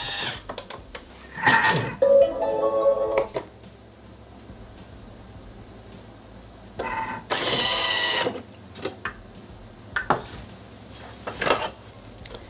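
A Thermomix food processor: short electronic tones as it is set, then its motor running for about a second and a half, whirring with the eggs and parmesan in the jug, followed by a few clicks.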